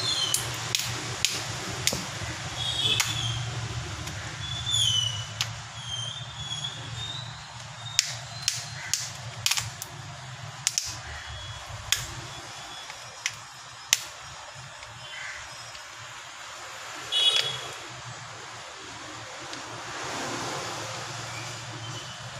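Sharp plastic clicks and snaps, a dozen or so at irregular intervals, as a smartphone's back cover is worked off by hand and its clips snap loose, over a low steady hum.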